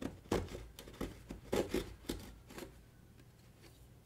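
A serrated knife blade scraping and cutting across the seal sticker of a cardboard box, in a run of short scratchy strokes that stops about two and a half seconds in.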